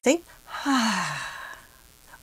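A woman's audible sigh: a breathy exhale about half a second in, lasting about a second, with her voice falling in pitch as it fades. It is a relaxing sigh, given as an example of sighing to expand a sense of pleasure.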